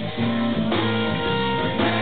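Live trio of electric guitar, bass and drums playing an instrumental passage, the guitar out front over a steady bass line, with drum or cymbal hits about two-thirds of a second in and again near the end.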